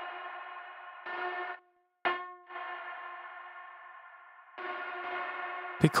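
Nebula Clouds Synthesizer (Reaktor ensemble) sounding a pitched, overtone-rich synth tone that starts and stops. A sharp note about two seconds in rings down slowly, after a brief gap of silence. A louder sustained passage follows near the end.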